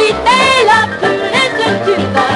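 Early-1950s boogie-woogie record playing from a 78 rpm shellac disc: piano over a steady bass and rhythm, with a swooping vocal note about a third of a second in.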